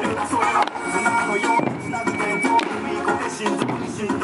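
Eisa drum dance music: a steady, lively music track with Okinawan taiko drums struck in time, sharp drum hits landing about once a second from the barrel drums and hand-held paranku.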